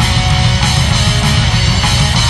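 Instrumental heavy metal music: loud, dense distorted electric guitar playing without vocals.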